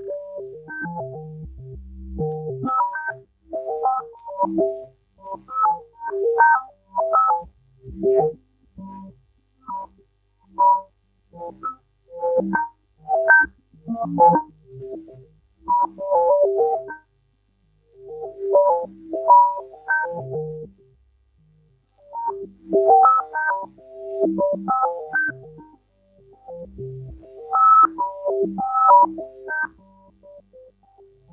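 Tesseract Radioactive Eurorack digital oscillator voice playing a sequenced melody of short gated synth notes in phrases separated by brief pauses. Its timbre keeps shifting as an LFO sweeps the wave shaper, with no added effects.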